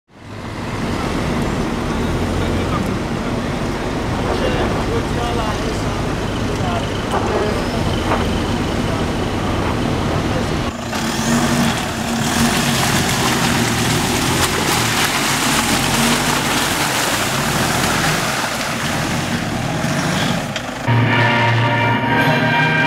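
Pickup truck driving over a rough dirt track, a steady rumble of engine and tyre noise with voices in the background, growing louder about eleven seconds in. Music starts about a second before the end.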